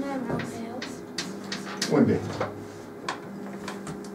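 Stick of chalk striking and scraping on a blackboard in a series of short, sharp ticks as hatch marks are drawn along a line segment.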